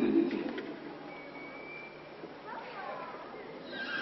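A brief low burst of voices at the start, then a few faint whistled, bird-like calls: one held steady whistle and some short curving chirps.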